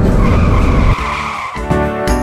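Tyre-screech car skid sound effect over background music. The screech lasts about a second, then the music carries on alone.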